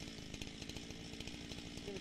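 Chainsaw's two-stroke engine idling steadily, a fast even pulsing.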